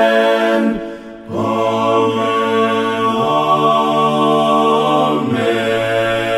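Group of voices singing a hymn a cappella in harmony, holding long chords on the closing 'Amen, Amen'. The first chord breaks off just before a second in, and after a short breath a new chord is held while the low voices move twice.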